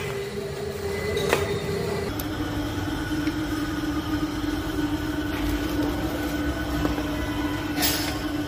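Steady mechanical hum over a low rumble, stepping down to a lower pitch about two seconds in, with a couple of light clicks.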